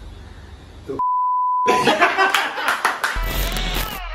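A single steady electronic bleep tone, one pitch held for under a second on dead silence about a second in. It is followed by a loud, busy stretch of noise with many sharp hits that runs to the end.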